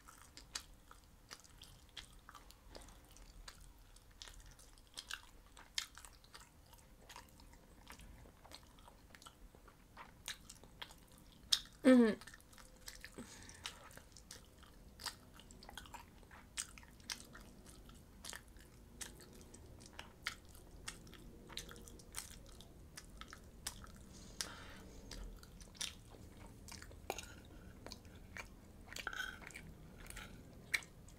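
Close-miked chewing of meatballs and bulgur pilaf: a steady run of small, sharp mouth clicks and smacks. About twelve seconds in, a loud hummed "mm-hmm" with a laugh is the loudest sound.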